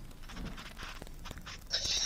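A pause in a conversation with faint background noise, then a short, sharp intake of breath near the end, just before a man starts to speak.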